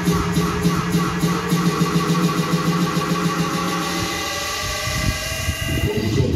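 Dance-class music in a build-up. A held low drone runs under a light steady beat that thins out, and tones slide upward over the last couple of seconds, like an engine revving or a riser, before the full track drops back in.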